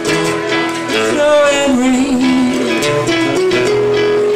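Live band playing acoustic and electric guitars, with a melody line of held notes that glide between pitches over the chords.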